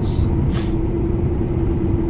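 Steady low engine and road drone heard inside a Pontiac Grand Prix cruising, with a constant hum riding over it. Two brief soft hisses come in the first second.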